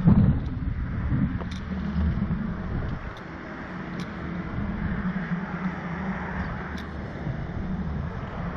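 Wind rushing over the microphone of a Slingshot reverse-bungee ride capsule as it swings and tumbles on its cords: a steady low rumble with a few faint clicks.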